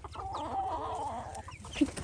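Chickens clucking: one long, wavering call lasting about a second and a half, then a short, louder cluck near the end.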